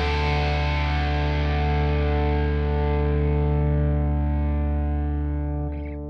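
A rock band's last distorted electric-guitar chord, with bass, held and ringing out, its brightness slowly dulling over several seconds before it is cut off near the end.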